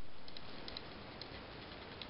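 Chihuahua puppy playing with a toy on a blanket: a few faint, light clicks over a steady hiss, after a surge of hiss at the start that fades within about a second.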